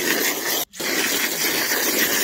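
Water jetting from a garden-hose spray nozzle onto loose peat moss and manure: a steady hiss that cuts out briefly about two-thirds of a second in, then carries on.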